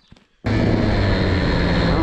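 KTM SX 85 two-stroke dirt bike engine running steadily under way, heard from a helmet-mounted camera, with its carburettor freshly cleaned. It cuts in suddenly about half a second in.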